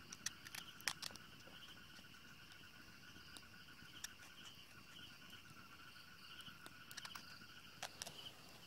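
Faint night chorus of calling insects: several steady, pulsing high trills running on together. A few sharp clicks stand out, clustered about a second in and again near the end.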